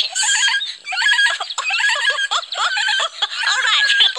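A high-pitched cartoon chick voice making a quick string of short squeaks and snuffles with no words, a puppet chick imitating a hedgehog snuffling in the leaves.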